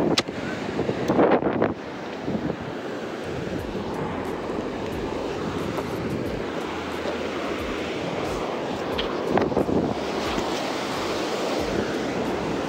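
Ocean surf breaking and washing on a beach as a steady rushing noise, with wind buffeting the microphone. There is a louder burst of sound in the first two seconds.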